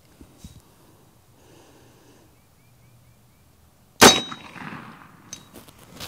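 A single shot from an AirForce Texan .45-calibre big bore air rifle about four seconds in: a sharp crack followed by a metallic ring that dies away over about a second.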